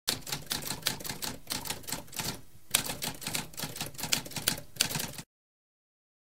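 Typewriter keys clacking in quick runs of keystrokes. There is a short break about halfway through, and the typing stops abruptly about five seconds in.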